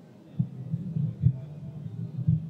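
Handling noise from a podium microphone being gripped and adjusted: low, soft thumps and rumbling, with a few stronger knocks.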